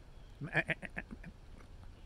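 A man imitating a goat's bleat with his voice: one wavering "maa-a-a-a" of about a second, starting about half a second in.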